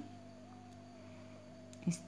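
Faint steady background hum with a slightly wavering high tone, heard in a lull between speech; a word of speech begins near the end.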